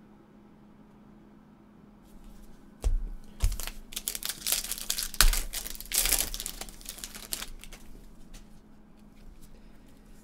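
Crinkling and tearing of trading-card pack wrapping and card sleeves being handled, starting about three seconds in with a few sharp knocks against the table, busiest for about four seconds and then thinning out.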